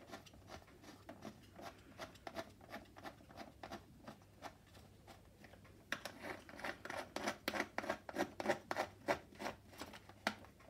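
Quick small clicks and scrapes from the screws on a Bumprider ride-on board's arm hinge being screwed back in by hand, locking the tilt gear wheel in place. The clicking grows louder and faster about six seconds in.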